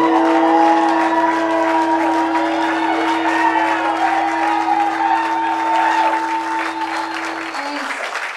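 A live band's last held chord ringing out, keyboard and guitars sustaining, with audience applause over it; the held notes stop about seven and a half seconds in, leaving the applause.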